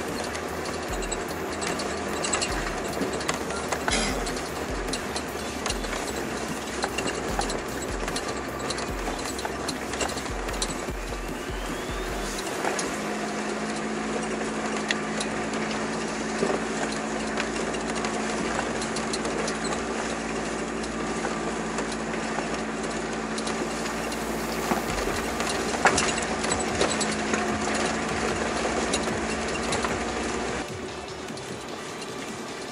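Four-wheel-drive vehicle crawling over a riverbed of large rounded boulders, heard from on board. The engine runs steadily under a continuous clatter of small knocks and rattles as the wheels ride over the stones, and a steady hum comes in about halfway through.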